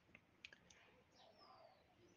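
Near silence: faint outdoor background with a few faint clicks in the first second and a faint high falling chirp about halfway through.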